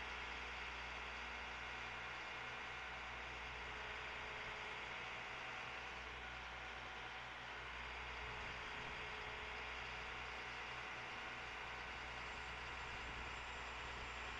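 Steady low engine hum of a bucket truck running to power its hydraulic boom as the bucket is lowered, under a constant hiss.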